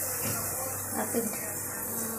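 Chicken fry sizzling in a pan on a gas stove: a steady high hiss, with a short laugh about a second in.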